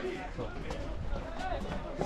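Faint, distant shouts and calls of players and spectators at an outdoor football match, with no close voice.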